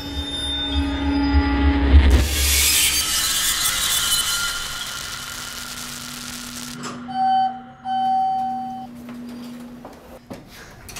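Horror-film sound design: a low rumbling drone gives way to a loud rushing noise swell that cuts off suddenly. Two electronic beeps of one pitch follow about a second apart, over a lingering low hum.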